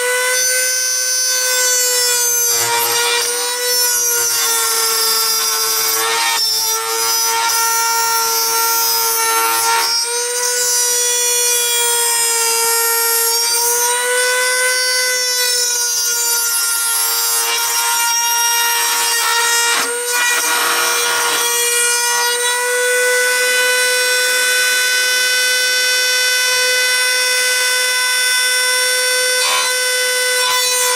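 A small benchtop machine tool runs an end mill through the metal chassis of an N scale Atlas Dash 8 locomotive. The spindle gives a steady whine that wavers slightly in pitch, and the rasp of the cut swells at several moments, most strongly about twenty seconds in.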